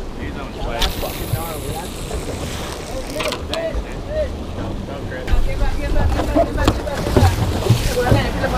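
Wind buffeting the microphone and choppy water against the hull of a small fishing boat, with distant voices calling. About five seconds in, a steady low outboard-motor hum joins in and the sound gets louder.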